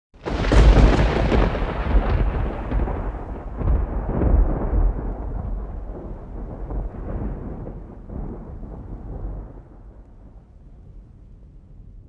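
A thunder-like rumble, the kind of sound effect laid over a title intro. It starts suddenly and loud, swells a couple more times in the first few seconds, then slowly fades away over about ten seconds.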